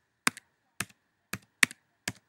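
Computer keyboard keys struck one at a time, about four or five keystrokes roughly half a second apart, as digits are typed into a field.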